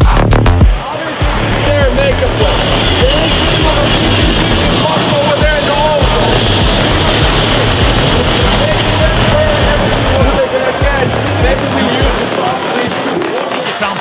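An electronic music beat cuts off about a second in, giving way to ice-hockey arena crowd noise with many voices singing and chanting.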